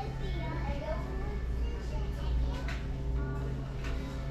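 Store ambience: indistinct voices of other people in the aisle over a steady low hum, with faint music in the background.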